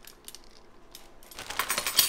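Plastic zip-top bag crinkling as it is handled. A few faint clicks come first, then denser, louder crinkling in the second half.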